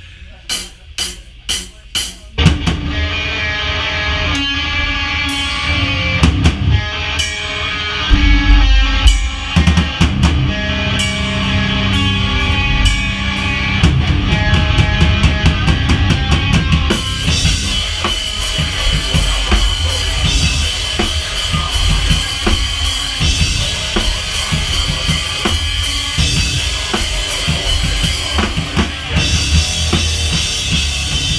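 A drummer counts in with four stick clicks, then a live band comes in loud: a drum kit with bass drum, snare and cymbals pounding over electric guitar. From about halfway through, the cymbal wash thickens.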